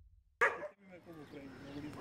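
A dog barking: one sharp, loud bark about half a second in, followed by quieter dog noises.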